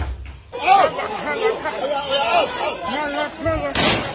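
Several voices talking and calling over one another, indistinct, starting about half a second in. A single sharp bang cuts through near the end.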